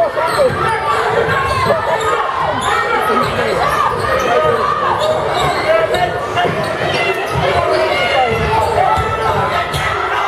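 Basketball dribbled on a hardwood gym floor during play, under steady crowd chatter that echoes in the gym.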